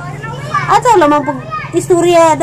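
Speech: voices talking, with a higher-pitched voice about a second in.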